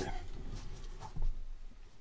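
Quiet handling noise as a pair of glasses on a neck cord is lifted and put on: faint rustling of clothing and cord, with one soft knock about a second in.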